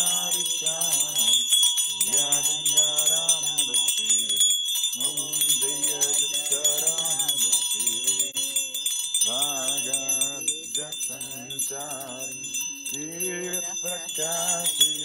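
Voices chanting in unison, in sung phrases of a couple of seconds with short breaks, over small bells ringing without pause throughout.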